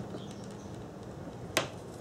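A single sharp click about three-quarters of the way through, otherwise quiet: the speed square tapping against the wooden board as it is handled.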